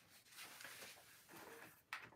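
Near silence, with faint off-camera rummaging: soft rustles and a sharp click near the end.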